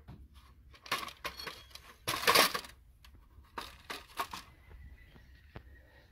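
Metal sluice legs and brackets knocking and clattering as they are handled and fitted into their mounts: a few separate knocks, the loudest a short rattling clatter about two seconds in.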